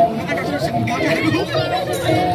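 Several people talking over one another in a crowd, with no one voice standing out.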